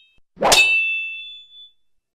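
A single sharp metallic clang about half a second in, like blades striking, with a high ringing tail that fades over about a second: a sound effect for the animated logo.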